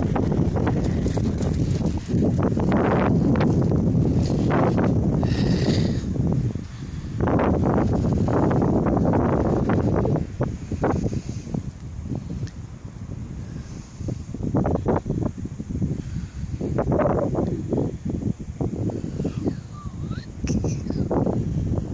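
Footsteps on a muddy field track with wind rumbling on the phone's microphone. The sound is loud in long stretches, with short quieter breaks.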